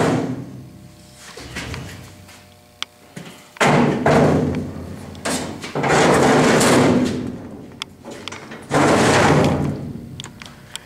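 Empty sheet-steel machine cabinet being handled on a steel diamond-plate trailer deck: hollow metal clunks and scrapes, in three bursts of about a second each.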